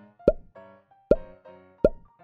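Three cartoon plop sound effects, each a short pop that falls quickly in pitch, coming about three-quarters of a second apart over soft background music.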